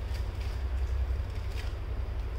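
A steady low hum runs underneath, with a few faint light clicks.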